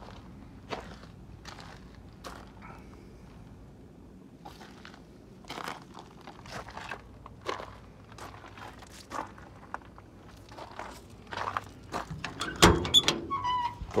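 Footsteps on gravel, then a Chevrolet van's door latch gives one loud clunk about twelve and a half seconds in as the door is opened.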